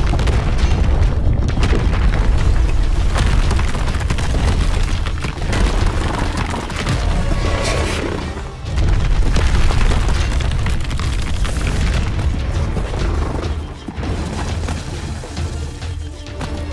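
Fight sound effects for a CG animated monster battle: repeated deep booms and crashing impacts, layered over loud dramatic background music.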